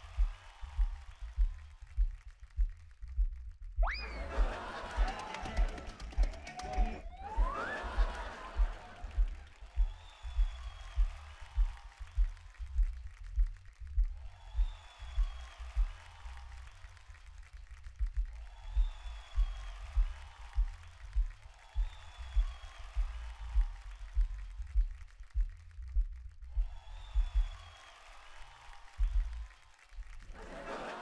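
Background music with a steady low beat, about three beats every two seconds. About four seconds in there is a louder stretch with rising sweeps.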